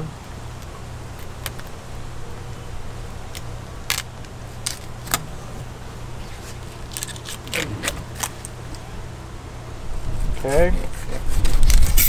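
Fillet knife working along a blackfin tuna's backbone and through the pin bones: scattered short clicks and scrapes over a steady low hum, with a brief voice near the end.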